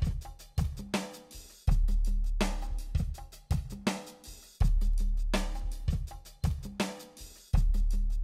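Background music with a steady drum-kit beat and a heavy low hit about every three seconds.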